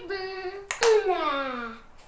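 A young girl's voice making a drawn-out, wordless sound, held steady and then falling in pitch. A sharp clap of the hands comes a little under a second in.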